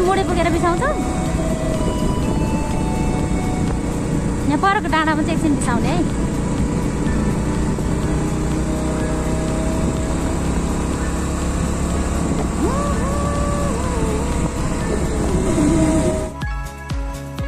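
Steady rumble of a motorcycle riding along a road, with wind on the microphone.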